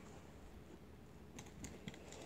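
Near silence: room tone with a few faint, short clicks in the second half.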